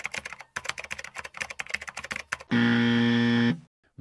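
Fast computer keyboard typing, then about a second of flat, steady electronic buzzer tone, like an error or wrong-answer buzzer.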